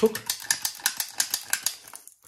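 Rapid, even clicking, about five clicks a second, from a hand-pumped stainless steel filling gun as it pushes minced-beef filling into a cannelloni tube.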